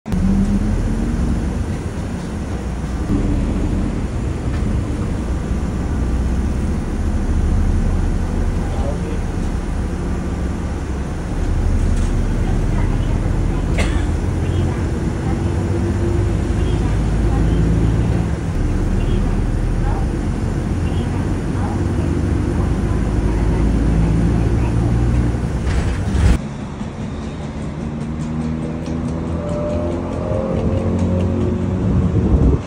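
Steady low vehicle rumble, as of a city bus running or road traffic, with faint voices in the background. It cuts off abruptly near the end into a quieter stretch with voices.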